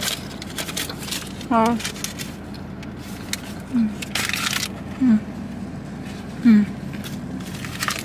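A woman's short appreciative "mm" sounds, four of them, while tasting food, with a brief rustling noise about halfway through.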